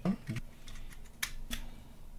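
A few light, sharp clicks as a microSD card is slid into a Raspberry Pi 5's card slot and the small board is handled.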